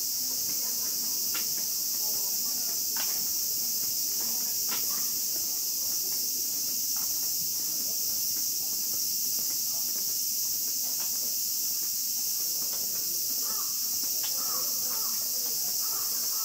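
Steady, high-pitched chorus of cicadas droning without a break.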